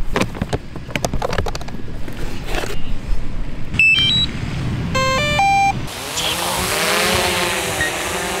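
DJI Mavic 2 Pro quadcopter being readied and launched. Handling knocks and clicks come first, then a short run of stepped electronic beeps and a power-on chime from the drone and its controller. About six seconds in, the motors and propellers spin up into a steady buzzing hiss whose pitch rises and falls as the drone lifts off and hovers.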